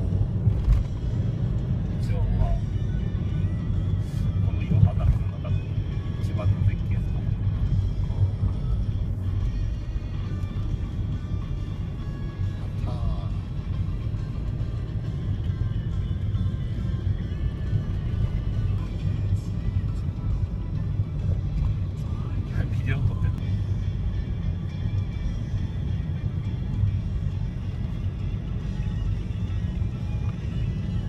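Steady low engine and road rumble heard from inside a moving car, with faint voices and music in the background.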